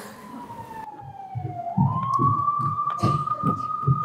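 A police-siren wail: one slow tone that dips, then rises about halfway through and holds. Under it, regular thuds of feet marching on a wooden stage.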